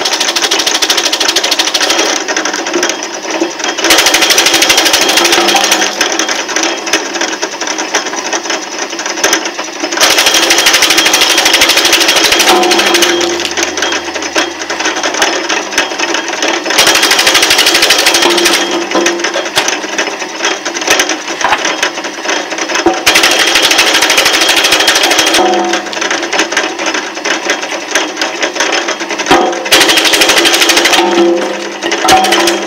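Electric wood chipper running and chipping wood: a dense, rapid clatter that grows louder in stretches of two to three seconds, about every six seconds, as the cutter bites into wood.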